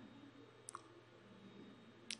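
Near silence: quiet room tone with one faint, brief click at the computer about two-thirds of a second in.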